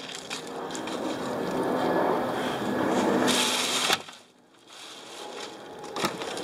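Plastic sheeting and loose trash crinkling and rustling as they are rummaged through by hand. The rustling is steady for about four seconds, with a sharper crackle just before it stops. It then goes on more quietly.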